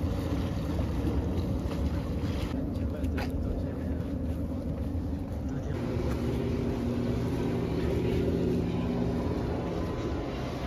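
A low, steady rumble by the river. About halfway through, the even drone of a motorboat engine comes in and holds.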